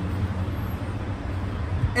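Steady low rumble of street traffic, with no voices over it.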